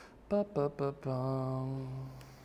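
A man humming a short tune without words: three quick notes falling in pitch, then one long low note held for about a second.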